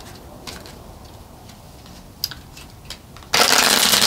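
A deck of tarot cards being handled, with a few light clicks from the cards, then shuffled on the table in a loud, dense rush for under a second near the end.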